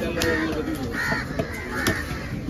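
Crows cawing repeatedly, short calls a little under a second apart, over the sharp knocks of a large knife chopping through fish flesh onto a wooden chopping block.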